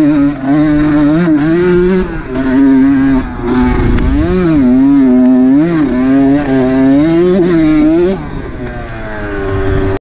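Dirt bike engine being ridden, its pitch rising and falling over and over with the throttle. About eight seconds in the throttle eases off and the note falls away as the bike slows.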